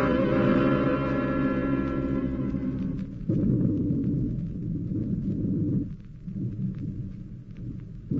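Dramatic orchestral music holding sustained chords, cut off about three seconds in by a sudden, loud, low rumbling sound effect of an underwater attack on a submarine. The rumble weakens near the end.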